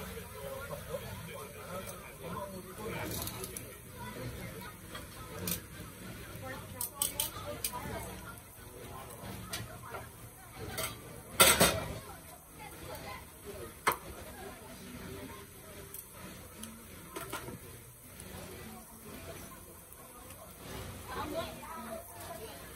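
Scattered clinks and knocks, with a sharp clink a little past halfway as the loudest, over murmuring background voices beside a charcoal grill of tiger prawns.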